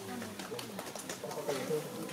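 Low, indistinct murmuring voices, with a few faint clicks.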